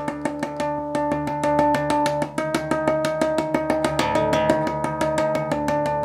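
Ibanez Mikro electric bass with an active EMG pickup, through an Ampeg cabinet, playing tapped artificial harmonics over an open string. It gives a rapid, even run of about eight picked notes a second with ringing harmonic tones above, and the notes shift pitch about halfway through.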